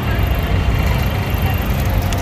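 Steady low rumble of a generator running under load, powering a sugarcane juice machine as cane is fed through its rollers.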